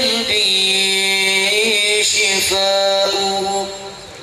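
Men's voices singing a qasidah, an Islamic devotional song, in long held and bending sung lines, with a steady high-pitched whine running underneath. The singing falls off in the last half second.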